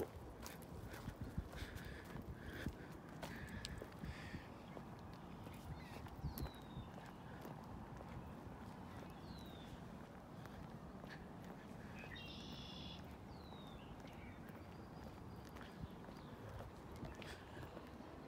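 Quiet outdoor ambience with irregular light taps, and a bird giving short falling chirps several times.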